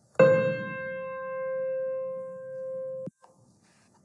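A single piano note played by a sound-waves simulation: struck just after the start, it rings and slowly fades for about three seconds, then cuts off suddenly.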